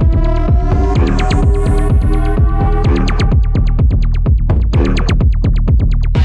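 Tech house / bass house track playing in a DJ mix: a heavy, steady bass line under rapid, evenly repeating synth stabs. A high noise sweep rises through the first half and cuts off about three seconds in.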